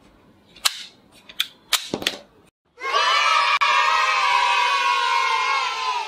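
Four sharp clicks from a plastic toy revolver being fired in the first two seconds. About three seconds in, a crowd of children starts cheering and keeps on for about four seconds, slowly falling in pitch.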